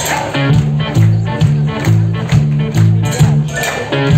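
Live band playing a song's instrumental intro: a repeating bass line under acoustic and electric guitars and drums, with a steady beat.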